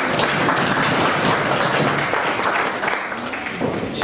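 Audience applauding, a steady patter of many hands clapping that thins out toward the end.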